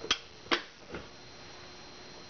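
A clear plastic parking-meter lens clicking and tapping three times against the meter head as it is seated in place.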